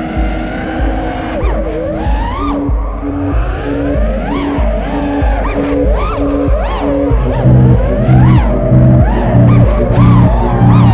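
FPV freestyle quadcopter's Emax Eco 2306 brushless motors and props whining, their pitch rising and falling in arcs as the throttle changes. Underneath runs electronic music with a steady beat, which turns heavier in the bass about seven seconds in.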